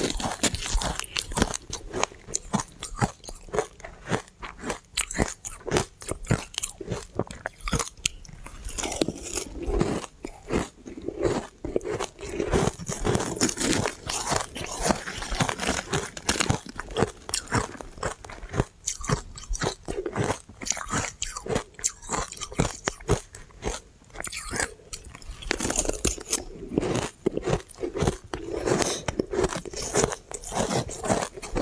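Refrozen shaved ice being bitten and chewed close to the microphone: a dense, irregular run of sharp crunches and crackles.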